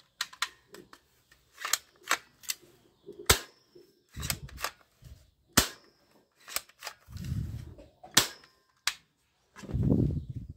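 Sharp plastic clicks and clacks from a black plastic toy gun being handled and its parts worked, about a dozen at uneven spacing, the loudest a little past three seconds in. A few dull handling thumps fall in between.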